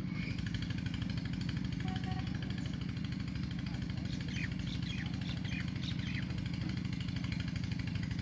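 A steady low machine hum runs throughout, with a few faint bird chirps about four to six seconds in.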